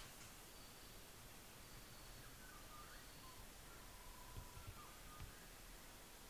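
Near silence: faint room tone with a few thin, distant bird calls.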